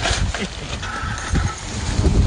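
Wire shopping cart rolling over rough asphalt, its wheels and metal basket rattling and clattering, with wind rumbling on the microphone.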